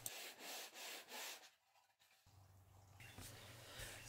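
Faint back-and-forth rubbing of a wooden cigar box body on a large sheet of floor-sander sandpaper, sanding its bindings flush. There are about three strokes, and the rubbing stops about a second and a half in; a faint low hum follows.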